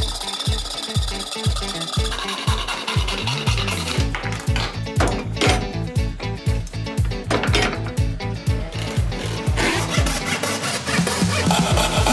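Background music with a steady beat, over a thin-bladed hand saw rasping through a thick block of pressed, glued cardboard.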